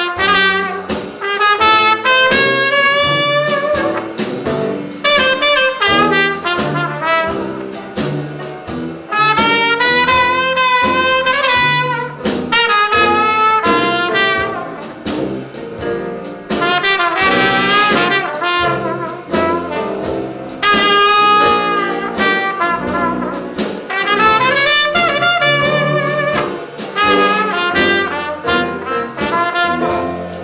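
Live traditional jazz band playing a slow blues instrumental, a trumpet leading with long, wavering notes over drums and a rhythm section.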